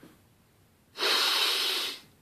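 One long nasal sniff, lasting about a second from about a second in: a man breathing in the aroma of a mug of hot coffee.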